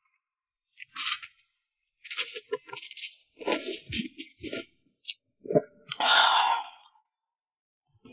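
Close-miked eating sounds of cold noodles in red chili oil being slurped up and chewed. A short slurp comes about a second in, then a run of wet smacks and clicks, then a longer slurp about six seconds in.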